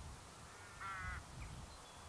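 A crow cawing once, about a second in, a short harsh call over a low rumble.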